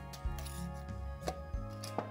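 Soft background music with steady held notes. A couple of faint clicks from a glass mason jar and its lid being handled come about a second in and again near the end.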